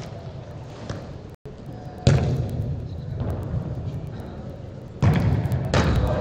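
Loud thuds of a football being struck, about two seconds in and again about five seconds in, each echoing through a large indoor hall. Players' voices are heard faintly underneath.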